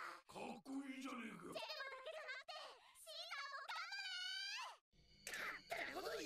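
Anime dialogue played back quietly: several character voices trading lines, with one shrill, wavering, drawn-out voice from about three seconds in until shortly before the five-second mark. A brief pause follows before the voices resume.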